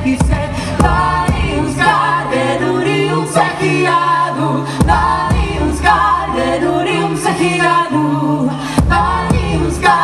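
Live band music: a woman singing lead with other voices joining in, over a low held drone and drum strikes.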